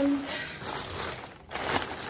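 Packaging crinkling and rustling in hands as a parcel is opened, in two spells of crackly noise with a short lull between them.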